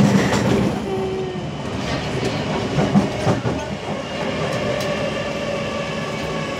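Singapore MRT train running between stations, heard from inside the carriage: steady wheel-on-rail running noise.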